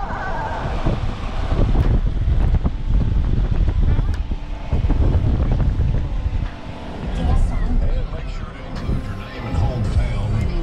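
Steady low road and wind rumble of a moving vehicle, heard from inside the cabin, with faint voices talking now and then.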